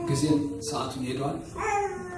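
A man preaching in Amharic into a handheld microphone, his voice rising and falling in pitch.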